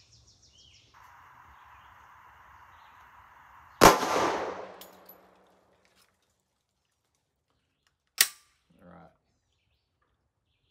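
A single shot from a Glock 20 pistol in 10mm Auto, ringing out with an echo tail that dies away over about a second and a half. About four seconds later comes one sharp click.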